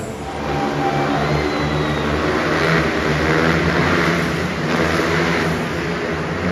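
Motorcycle engines running and revving unevenly, with crowd noise.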